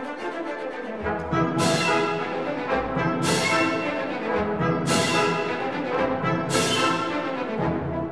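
A full orchestra playing a loud zarzuela passage with brass to the fore. It swells about a second in, and four cymbal crashes land evenly about a second and a half apart.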